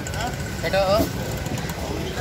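A man's voice calling out briefly over a steady low rumble of an idling engine.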